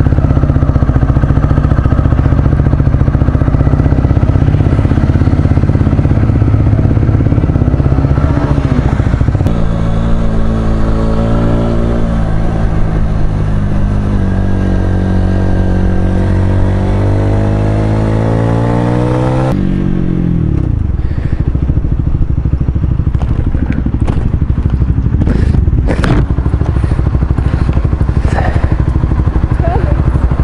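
Honda CBR125R's 125 cc single-cylinder four-stroke engine through an Ixil Hyperlow aftermarket exhaust, heard from the rider's seat while riding. From about a third of the way in, the engine note climbs in repeated rising revs as it pulls through the gears, then drops sharply just past the middle as the throttle closes. The second half is lower and rougher, with scattered clicks.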